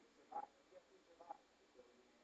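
Near silence: room tone, with two faint, brief sounds about half a second and just over a second in.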